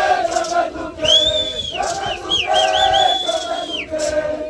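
Indigenous chorus chanting together in unison. About a second in, a high, piercing whistle-like call rises above the voices, holds, warbles up and down, and falls away just before the end.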